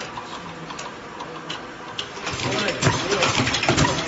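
Aerosol filling line machinery running: cans clattering along a metal conveyor into the star-wheel of the cap-pressing machine, with fast ticking and clicking that becomes much louder and denser about two seconds in.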